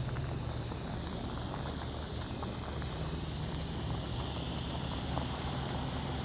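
Water at a rolling boil in a small camp-stove pot, bubbling and crackling over the steady low rumble of the stove's burner.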